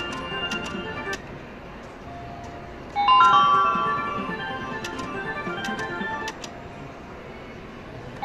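IGT Wheel of Fortune slot machine's spin sounds. A bright electronic chime tune starts as a new spin begins about three seconds in, followed by a run of sharp clicks while the reels turn, with the last clicks of the previous spin in the first second. A low background din runs underneath.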